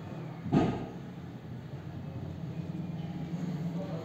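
A single sharp knock of a marker against a whiteboard about half a second in, during writing, then a steady low hum that grows a little louder toward the end.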